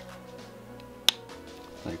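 A single sharp plastic click about a second in, as a plastic GoPro mount is snapped into place on the camera, over faint background music.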